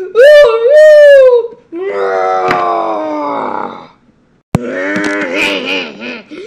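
A voice making wordless sound effects for toy figures: a loud, high cry for about a second and a half, then a long falling groan. About four and a half seconds in there is a sharp tap, followed by a wavering voiced sound.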